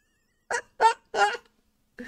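A man laughing: three short, quick bursts of laughter.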